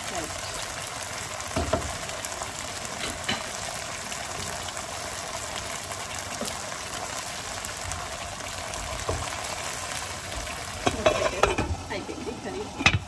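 Semi-gravy mutton curry sizzling and bubbling in a frying pan while a wooden spatula stirs it, knocking against the pan now and then. Near the end, a louder clatter comes as a glass lid is set on the pan.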